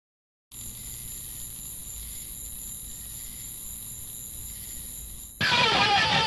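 A steady hiss with a faint hum, then about five seconds in a distorted electric guitar comes in loudly, its notes sliding down in pitch.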